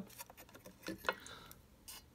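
A few light, scattered clicks and taps as a printed circuit board is shifted against a metal chassis, the loudest about a second in.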